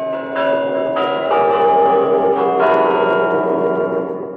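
Bells ringing: several pitched strikes, one after another about every half second to second, each ringing on over the last, the whole fading out near the end.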